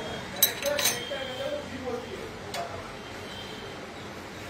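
A few short metallic clinks, as of a refrigerant pressure gauge and its brass fitting being handled. The clinks fall in the first second and once more past the middle, with faint voices in the background.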